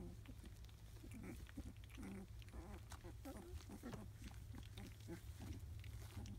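A litter of three-week-old rough collie puppies giving many short, low calls one after another, over a steady low hum.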